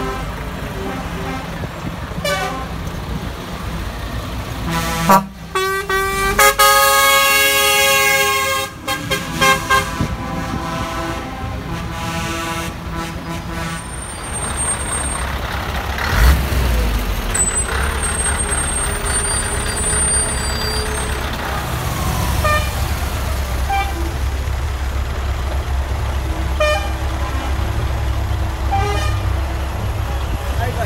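Lorry air horns blowing: a blast that cuts off at the start, a short blast about five seconds in, then a loud held blast of about two seconds. After that comes a heavy diesel truck engine running close by as the lorry drives past, strongest from about the middle on.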